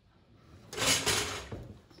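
Paint being mixed on a palette with a brush to add white: a single scraping rub lasting under a second, starting about half a second in and fading away.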